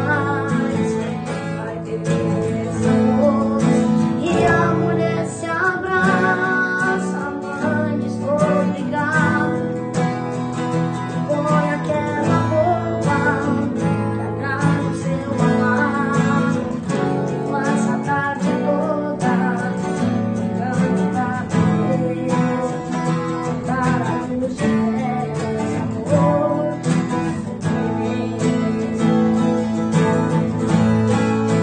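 Two acoustic guitars strummed together accompanying a boy singing a sertanejo ballad.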